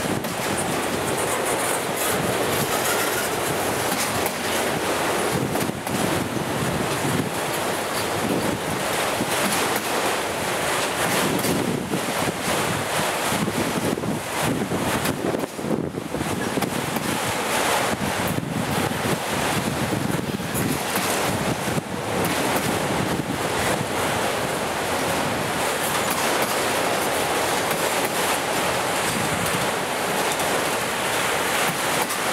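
Autorack freight cars rolling past close by: a steady rushing noise of steel wheels on rail that keeps on without a break.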